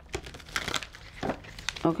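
Tarot cards being handled in the hand: a run of irregular dry rustles and light clicks of card stock against card stock.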